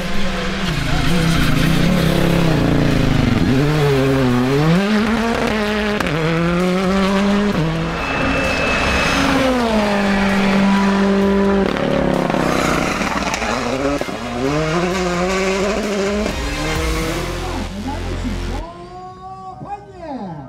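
Hyundai i20 R5 rally car's turbocharged four-cylinder engine revving hard on a stage. Its pitch climbs and drops again and again as it shifts gear, with tyre and gravel noise as the car passes. The engine sound cuts off abruptly near the end.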